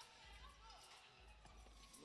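Near silence: faint court ambience of a basketball game, with distant voices and faint music.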